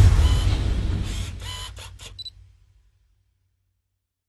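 Outro sound effect: a deep swell, loudest at the start, fading away over about two and a half seconds, with a quick run of four or so sharp clicks between one and a half and two seconds in, then silence.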